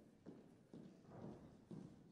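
Faint footsteps of two dancers' boot heels on a stage floor, a soft knock about twice a second as they walk on.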